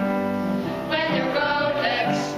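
A small group of children singing together, holding long notes and moving to new notes about a second in.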